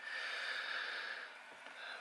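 A long breathy exhale, a smooth hiss lasting about a second and a half that then fades.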